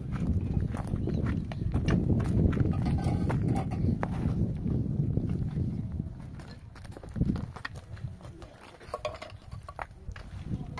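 Hollow concrete blocks clacking and scraping as they are handled and set on a block wall, with scattered knocks and footsteps on rubble. A low rumble runs under the first six seconds, then drops away; a sharper knock stands out about seven seconds in.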